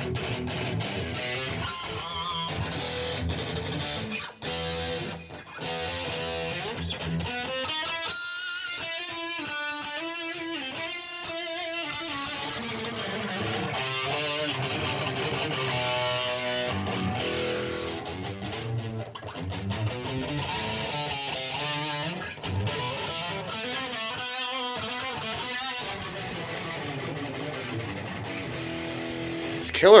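Jackson Roswell Rhoads aluminium-body electric guitar played through an amplifier: riffs and chords with runs of fast lead notes in the middle.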